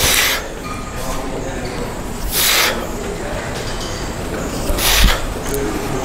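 A man's forceful, breathy exhales, one with each rep of a heavy lat pulldown, three in all about two and a half seconds apart, over low gym background noise.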